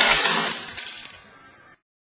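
Sunglasses on a foam mannequin head shattering under a nail-gun shot: a sudden sharp crack, then a clatter of broken lens and frame pieces that fades away over about a second and a half.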